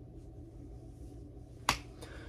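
Steady low room hum, then a single sharp click near the end.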